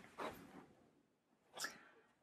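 Near silence: room tone, with two faint short puffs of noise, one about a quarter second in and one near the end.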